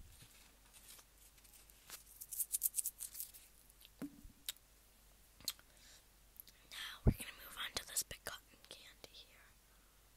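Close-mic ASMR mouth sounds from chewing a soft banana marshmallow, with a quick run of wet clicks. There is a knock on the table about four seconds in. About seven seconds in comes a thump and then rustling as the plastic cotton candy tub is handled.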